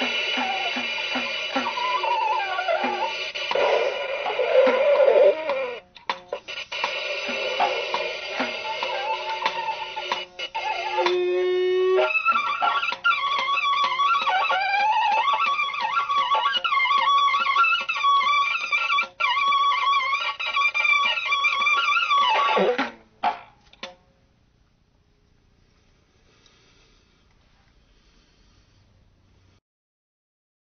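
Free-improvised music on string instruments: layered sustained tones with sliding pitches and a fast rising run of notes midway. The music breaks off abruptly about four seconds before the end, leaving near silence.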